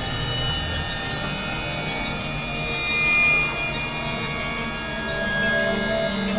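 Experimental electronic music: many layered sustained tones and drones. A high tone swells to its loudest about halfway through, then fades back.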